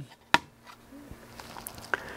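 Hard plastic graded-card case handled in the hand as it is turned over, with one sharp click about a third of a second in and a softer one near the end.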